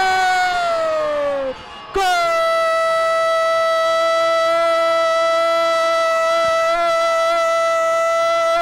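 A male football commentator's long drawn-out "Gooool!" cry calling a goal, held on one steady pitch for about seven seconds. It comes just after a shorter shouted vowel that falls in pitch and breaks off.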